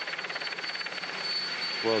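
Helicopter rotor beating fast and steadily, the live sound from the TV camera helicopter filming from above.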